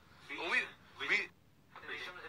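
Two short vocal sounds from a person's voice, about half a second apart, with a quiet pause after each; no words are made out.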